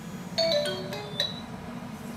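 A short electronic chime melody: several brief bell-like notes at different pitches in the first half.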